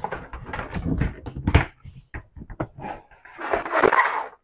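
Plastic storage bins and lids being handled and set on shelves: a run of knocks and clatters with a louder knock about a second and a half in, then a brief rustle near the end.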